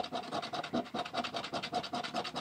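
Quick repeated strokes scratching the coating off the bottom of a Big Bucks scratch-off lottery ticket, uncovering the area that must be bare for the ticket to be scanned.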